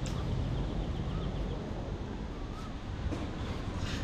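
Outdoor ambience: a low wind rumble on the microphone, with a faint rapid chirping early on and a couple of faint wavering bird calls near the middle.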